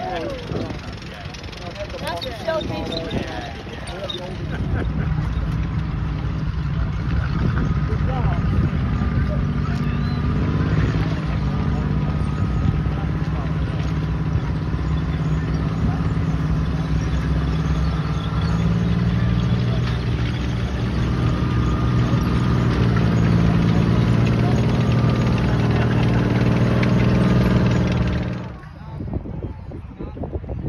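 A tracked armored vehicle's engine running steadily, coming in about four seconds in and cutting off abruptly near the end.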